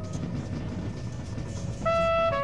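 A low rumble and airy hiss with no clear pitch, from a free-jazz live ensemble, between flugelhorn phrases. Near the end a flugelhorn note starts loudly.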